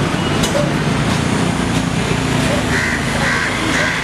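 Steady street traffic noise with passing vehicles. From a little before three seconds in, a run of short, evenly spaced calls repeats about twice a second.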